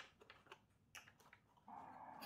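Near silence with a few faint, short clicks: a screwdriver turning out a screw from the scooter's plastic seat compartment.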